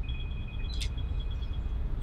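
Room tone of a large hall during a pause in speech: a steady low rumble, with two faint high steady tones and a single sharp click a little under a second in.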